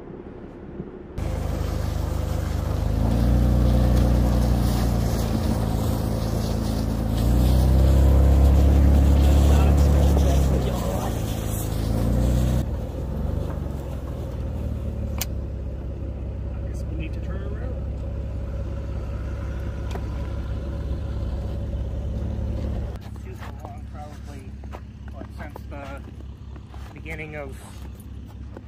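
Jeep engine running on a snowy off-road trail, its pitch rising and falling as it revs and eases off, loudest about a third of the way in. After a cut partway through, the engine sound drops to a quieter, steadier running.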